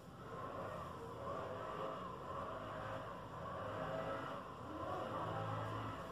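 Street traffic: cars passing with a steady, swelling rumble and engine hum, strongest near the end.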